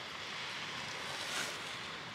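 Steady low hiss of background noise, with no distinct sound events.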